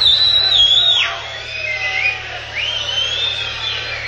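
Concert crowd noise between songs with a loud whistle from someone in the audience: one high whistle held and then dropping away about a second in, a short lower one, then a rising whistle held near the end.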